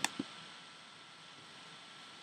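Room tone: a faint steady hiss from the recording, with one soft click just after the start.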